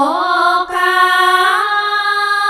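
A woman's voice singing a Khmer Buddhist sarabhanh chant with no accompaniment: an ornamented line that dips in pitch, breaks off briefly a little past the middle, then settles into a long held note.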